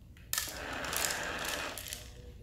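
Treat and Train remote treat dispenser running for about a second and a half, its spinning tray rattling kibble out into the plastic bowl.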